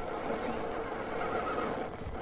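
A 1/10 scale RC rock crawler's electric motor and drivetrain running steadily at crawling speed as it climbs rock, a low even whir with a faint tone partway through.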